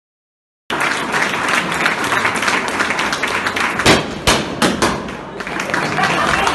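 Audience applauding and cheering, cutting in suddenly a little way in. About four seconds in, two loud pops of confetti cannons firing stand out above the clapping.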